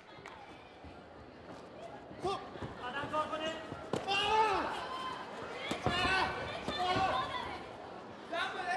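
Live taekwondo sparring in an arena: voices shouting from about two seconds in, mixed with several sharp thuds from kicks and footwork on the mat.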